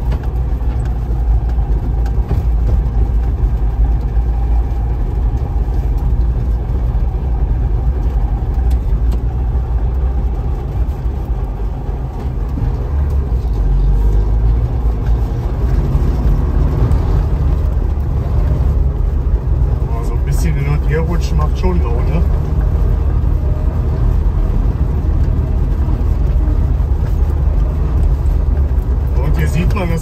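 Trabant 601's two-cylinder two-stroke engine running while the car drives along, heard from inside the cabin as a steady low drone.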